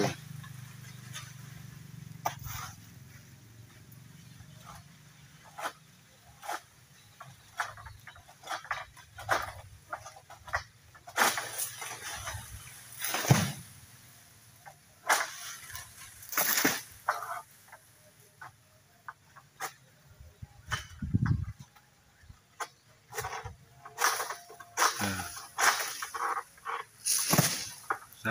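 Irregular sharp cracking and scraping strokes of a long-pole palm sickle (egrek) hacking and pulling at oil palm fronds high in the crown, with rustling of the fronds. A low thud comes about three-quarters of the way in.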